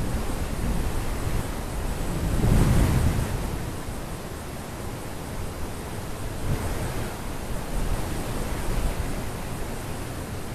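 Wind buffeting the microphone: a steady rumbling hiss that swells briefly about two and a half seconds in.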